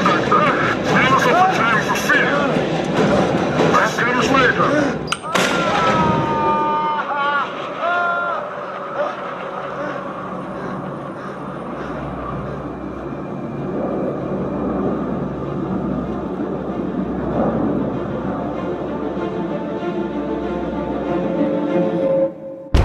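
Action-film soundtrack mix: shouting voices and heavy impacts over the score for the first few seconds. After about six seconds it settles into sustained music over a low, steady rumble.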